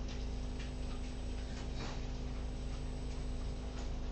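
A few faint computer mouse clicks over a steady low background hum.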